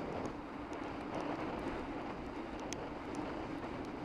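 Steady wind and tyre noise from a bicycle riding along a wet road, heard through the bike's camera microphone, with a few faint ticks.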